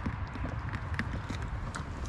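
Irregular light clicks and knocks of a freshly caught crappie being handled out of a mesh landing net, over a steady low rumble.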